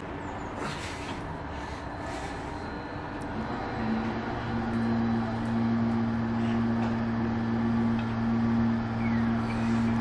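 Outdoor town background noise, with a steady low machine hum, like a motor or engine running, that comes in about four seconds in and holds steady.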